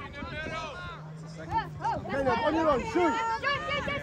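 Overlapping, indistinct calls and chatter of several voices from players and spectators at a youth soccer match. A low steady hum runs under them for about the first two seconds.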